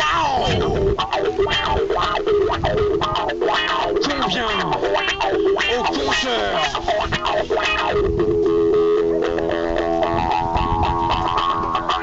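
Electric guitar played through effects pedals, with distortion, over percussion. It plays several sliding, falling notes, then a chord held through the last few seconds.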